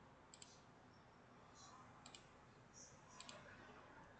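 Near silence with a few faint computer-mouse clicks spread through it, as an image on screen is closed and the slide changed.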